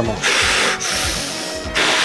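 Two short, forceful hissing breaths from a lifter bracing before a heavy finger-grip lift, one early on and one near the end, over background music.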